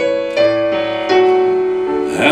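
Piano playing held chords as a gospel song's accompaniment, with new chords struck about a third of a second in and again about a second in.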